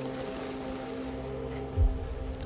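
Excavator diesel engine running steadily, with one low thud near the end.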